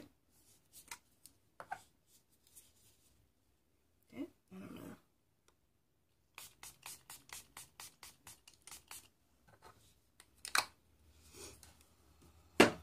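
Fine-mist pump bottle of Milani Make It Last setting spray being spritzed onto the face: a quick run of short spritzes, about four or five a second, a little past halfway, with one more near the end.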